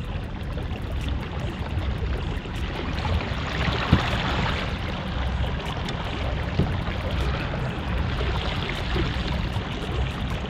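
A kayak being paddled across calm water: the splash and wash of paddle strokes over a steady low rumble, with a single sharp knock about four seconds in, likely the paddle tapping the hull.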